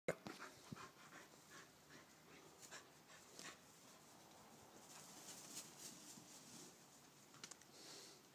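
A corgi panting faintly in a run of short, irregular breaths.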